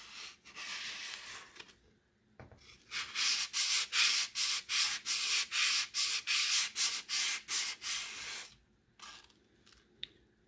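Sandpaper rubbed by hand over a wooden bowl to take off old varnish: quick back-and-forth scraping strokes, about three a second. The strokes are soft at first, stop briefly, then come back steady and louder, and end shortly before the close.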